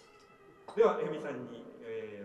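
A man's voice calls out once, about three-quarters of a second in, its pitch sliding up and then settling. Before it, faint steady tones hang in the room.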